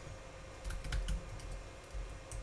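Typing on a computer keyboard: several separate keystrokes.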